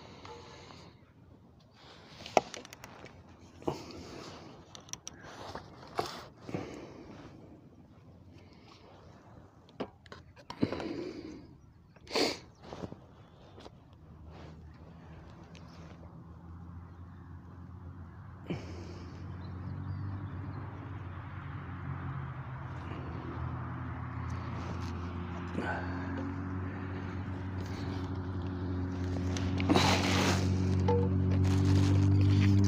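Scattered light clicks and knocks, then a low engine hum, steady in pitch, that sets in about halfway and grows gradually louder.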